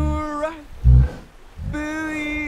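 A man sings a long held note, broken by two short, deep gorilla grunts. The second grunt, about a second in, is the loudest sound. Another held sung note begins near the end.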